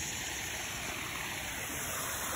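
Creek water running, a steady even rush with no breaks.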